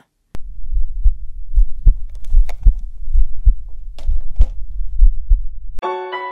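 A deep, low rumble with irregular heavy thuds, starting abruptly after a moment of silence and cutting off abruptly near the end, as piano music comes in.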